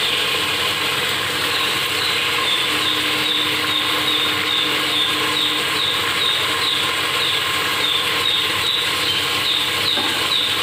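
Vegetable curry simmering and sizzling in a kadai: a steady bubbling hiss, with a faint high chirp repeating about twice a second.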